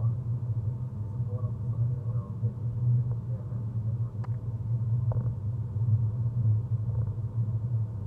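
Steady low road and tyre rumble heard inside the cabin of a BMW i3 electric car driving along a highway.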